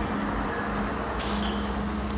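A bus engine running steadily, a low hum, over general street traffic noise.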